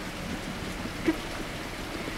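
Steady hiss of rain falling during a storm, with a faint low hum underneath.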